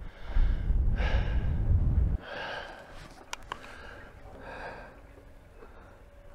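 A man breathing in and out in a series of audible breaths. For the first two seconds a low rumble of wind buffets the microphone, then stops abruptly. Two faint quick clicks come a little past halfway.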